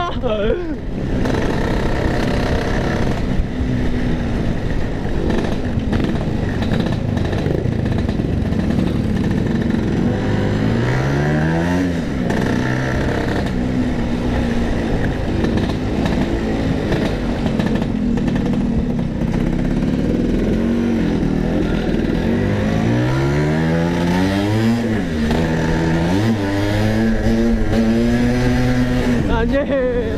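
Two-stroke Vespa scooter engine heard from the rider's seat while under way, its pitch climbing and dropping several times as it is revved up and backed off.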